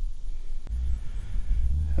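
A low rumble on the microphone, growing stronger after about two-thirds of a second, with a single faint click at that point.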